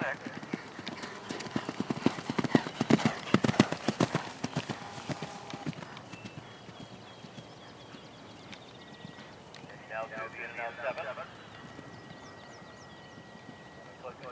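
A horse's hoofbeats galloping on turf, a rapid run of thuds that grows loud as the horse passes close, loudest a few seconds in, then fades away as it gallops off.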